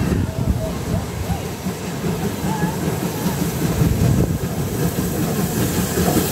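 Small steam tank locomotive approaching and working under steam, a low rumble that grows louder toward the end as it draws near.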